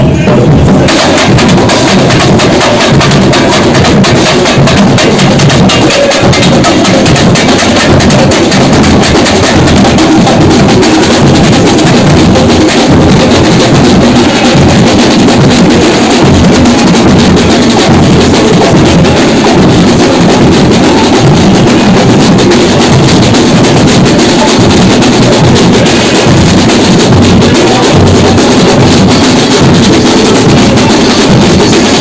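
A samba school bateria drumming at full force up close: deep surdo bass drums under snare drums and other hand drums in a fast, dense, unbroken samba rhythm.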